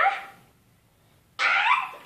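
Two short, high-pitched excited squeals from a young child at play: one rising squeal at the start and a second just before the end.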